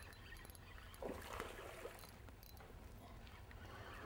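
Faint water splashing beside a boat, with a short louder patch about a second in, as a hooked bass fights at the surface on the line. A low steady rumble runs underneath.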